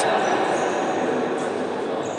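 Steady, echoing din of a large indoor sports hall during a futsal match: distant voices and play on the court blend into one even wash, with no single sound standing out.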